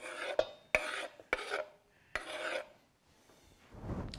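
Kitchen knife blade scraping chopped sprats off a wooden cutting board into a stainless steel bowl: four short scrapes in the first two and a half seconds, each starting with a sharp click.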